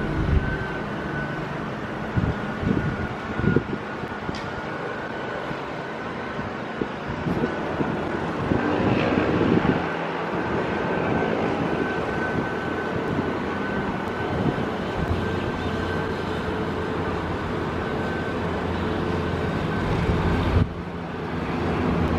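Steady city background noise, a distant traffic hum, heard from high up among apartment blocks, with a thin steady high whine running through it.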